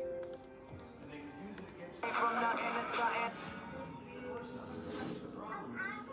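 Video playing from a device's speaker: music with voices, with a louder, busier stretch of sound from about two seconds in to just past three seconds.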